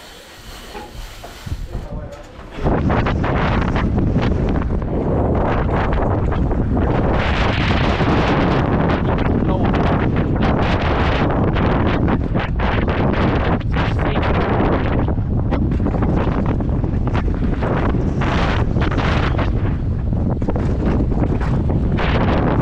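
Quiet at first, then about two and a half seconds in a loud rush of wind on a helmet camera starts as a downhill mountain bike drops out of the start gate and runs at speed down a dirt track. Tyres on dirt and frequent short knocks from the bike over bumps run through it.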